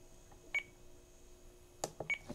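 A FrSky Taranis radio transmitter gives a single short, high key-press beep as one of its menu buttons is pressed, followed near the end by a faint click of a button. The beep is the radio's menu feedback while a special-function entry is edited.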